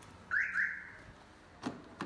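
A car alarm gives two quick rising chirps as the remote key fob disarms and unlocks the Toyota sedan. About a second later comes a single sharp click as the door handle is pulled.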